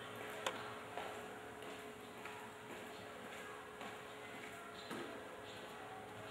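Quiet room tone with a faint steady hum and a few small, soft clicks, the sharpest about half a second in.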